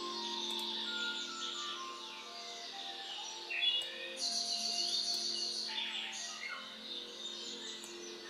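Quiet background music of soft held notes that change pitch slowly, with bird chirps mixed in.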